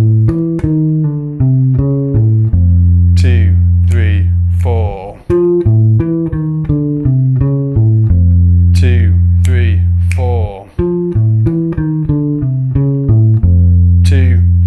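Electric bass guitar, a Precision-style bass played fingerstyle through an amp, looping a fast D-minor lick. Each time a quick run of short notes ends on a long held low note, and the phrase comes round three times.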